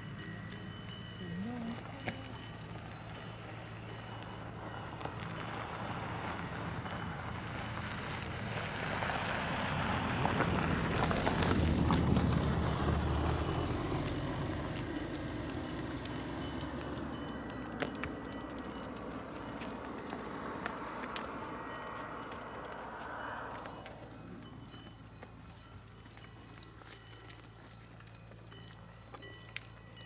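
Cows' hooves clopping irregularly on an asphalt road as a herd walks past. A broad rushing noise swells to its loudest about twelve seconds in and dies away just before the last quarter, over a steady low hum.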